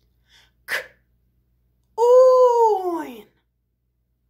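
A high-pitched voice sounding out a word in phonics style: a short consonant burst about a second in, then a long, loud, drawn-out "oi" vowel whose pitch rises and then falls, the middle sound of "coin".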